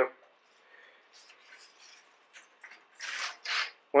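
A thin strip of oak veneer edge banding handled and rubbed between the fingers: faint rustling, then two short dry rubbing scrapes near the end.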